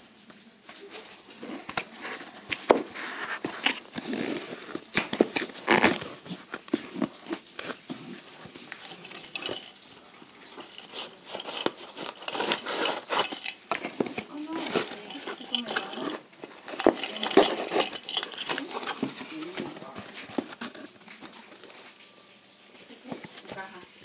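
Cardboard box being handled and opened: irregular rustling, scraping, crackles and knocks, busiest about halfway through and quieter near the end.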